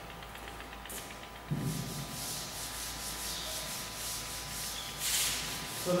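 Blackboard duster wiping chalk off a blackboard: a run of short back-and-forth rubbing strokes, the strongest near the end.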